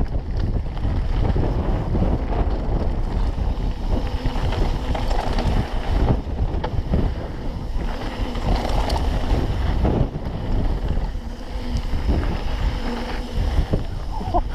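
Wind buffeting the microphone of a mountain bike rider's action camera during a fast descent on a gravel trail, over the rumble of tyres on loose gravel, with frequent short knocks and rattles as the bike goes over bumps.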